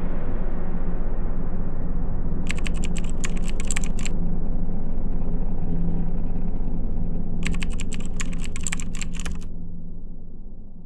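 Two bursts of rapid typing clicks over a low, steady rumbling drone. The first burst comes about two and a half seconds in and lasts over a second; the second comes about seven and a half seconds in and lasts about two seconds. The drone starts fading near the end.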